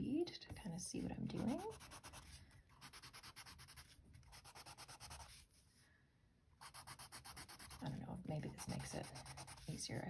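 Yellow coloured pencil shading over letters on paper: rapid back-and-forth scratching strokes, with a pause of about a second a little past the middle. A voice murmurs briefly near the start and again near the end.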